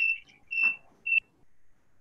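Three short, high-pitched chirps of one steady tone, spaced about half a second apart, over the call audio, then a faint hush.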